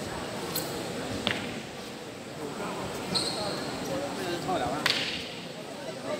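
A walking stick swung and struck during a tai chi cane form, giving a few sharp cracks and swishes, the loudest near the end, over the murmur of voices in a large hall.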